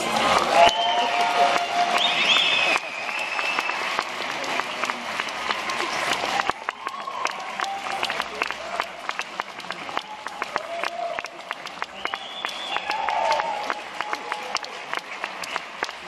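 Audience applauding, with shouts rising above the clapping. The applause drops in level about six and a half seconds in and carries on more thinly.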